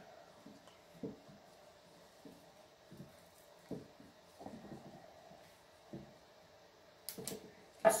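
A handful of faint knocks and clicks as a piston ring compressor clamped around an oiled piston and connecting rod is tightened and handled, over a faint steady hum.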